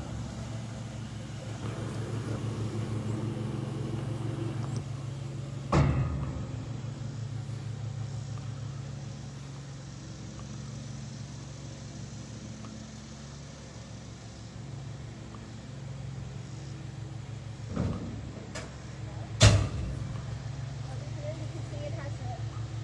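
Dump trailer's 12-volt electric hydraulic pump running with a steady hum as the dump bed is lowered. Loud metal clunks come about six seconds in and twice near the end.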